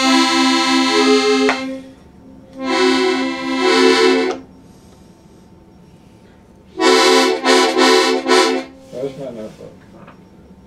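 Hohner Carmen II piano accordion playing three short phrases, each about a second and a half long with pauses between: a low note held under short repeated notes above it.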